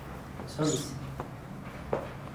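A short snatch of a voice about half a second in, over a faint steady low hum, with a sharp click near the end.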